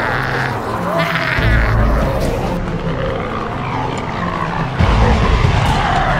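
Loud wavering human cries, shrieks and moans, over background music with a heavy bass beat.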